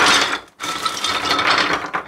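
Wooden Lincoln Logs toy pieces pouring out of a plastic bag onto a tabletop: a dense, rapid clatter of many small wooden logs tumbling onto each other, with a brief pause about half a second in.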